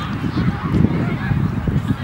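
Low rumble of wind buffeting the microphone, with faint voices shouting across the field.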